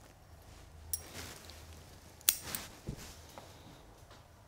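Spruce branches and needles rustling as hands work in the foliage, with two sharp metallic clicks of a hand tool, the louder one a little past halfway, and a dull knock just after it.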